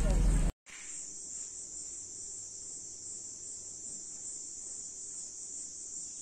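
A car interior's low rumble for about the first half second, cut off abruptly. Then a steady, high-pitched insect chorus that runs on unbroken.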